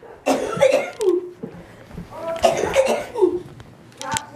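A person coughing in two bouts, about two seconds apart.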